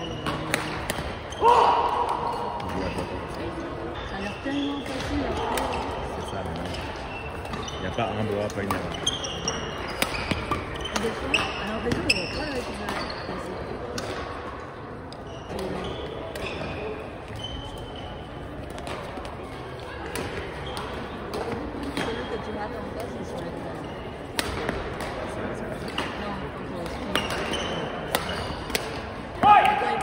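Badminton being played in a gym hall: repeated sharp racket strikes on the shuttlecock and short squeaks of shoes on the hard floor, with voices echoing in the hall. Two louder sudden sounds stand out, about a second and a half in and just before the end.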